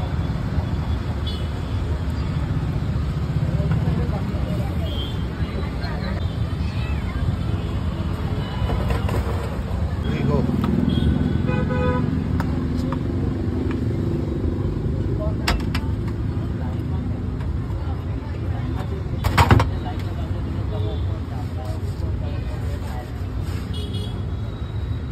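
Road traffic running steadily, with a vehicle horn honking about halfway through. A single sharp knock, the loudest sound, comes about three quarters of the way through.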